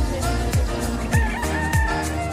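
A rooster crows once, starting about a second in and lasting just under a second, over background music with a steady beat.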